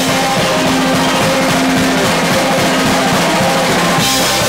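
A punk rock band playing loud and live: a drum kit with crashing cymbals keeping a steady, driving beat, under electric guitars and bass.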